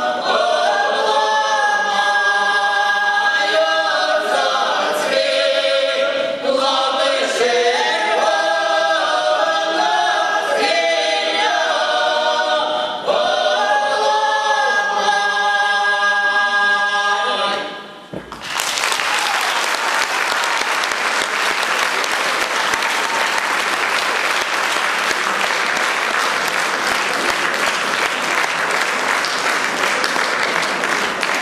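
A folk vocal ensemble sings unaccompanied, several voices together under a strong female lead. About seventeen seconds in, the singing ends abruptly and steady audience applause follows for the rest.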